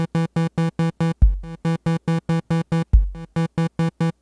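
Electronic kick drum hitting twice, with a buzzy synthesizer pulsing in quick short notes, about eight a second, that drops out right after each kick. This is heavy sidechain compression in ReaComp, ducking the synth to the kick.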